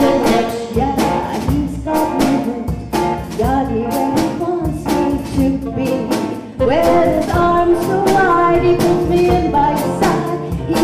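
Live band playing a bluesy jazz number: a woman singing lead over drum kit, electric guitar, keyboard and saxophone, with a steady drum beat.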